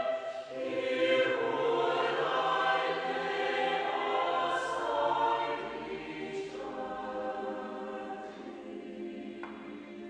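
A church congregation singing a hymn together, holding long notes, growing softer over the last few seconds.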